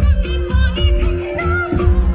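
A woman singing a Nepali song into a handheld microphone over amplified backing music with a heavy bass beat, heard through the stage PA speakers.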